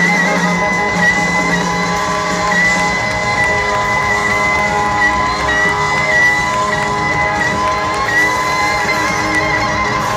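Live rock band with the lead electric guitar holding one long high note, wavering with vibrato, while the crowd cheers.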